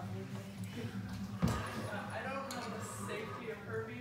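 Faint background chatter of several people talking in a room, over a low steady hum, with a single sharp knock about a second and a half in.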